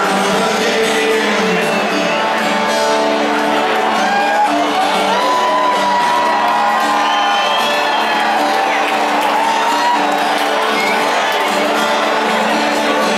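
Live rock band played loud through a stadium PA, with acoustic guitars, and the crowd whooping and shouting over the music.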